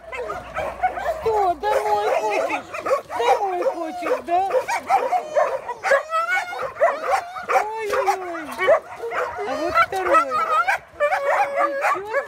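Several dogs whining and yowling, drawn-out calls that slide up and down in pitch and overlap one another, with a few short yips. It is the vocal 'talking' of excited dogs; one is called really talkative.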